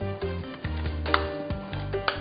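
Background music with sustained notes over a low bass line. A single light click sounds about halfway through, a metal spoon against a glass bowl of mashed potato.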